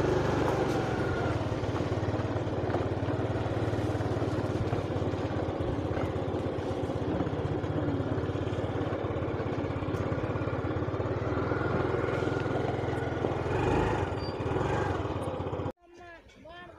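A small engine running steadily at an even speed, cutting off abruptly near the end.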